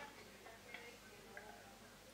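Near silence: quiet room tone with a couple of faint small ticks.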